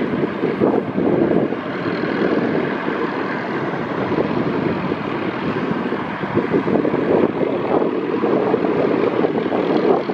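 Light turbine helicopter hovering, its rotor and engine running steadily with an even chop.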